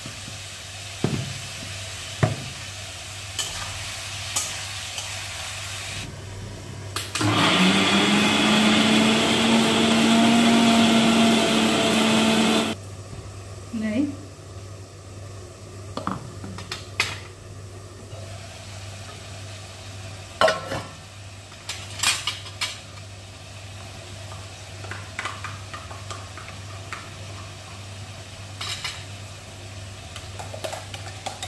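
Electric kitchen mixer grinder running for about five seconds, grinding dry spices to powder, its motor pitch rising slightly as it spins up before it cuts off. Before and after it come scattered knocks and clicks from the steel jar and lid being handled.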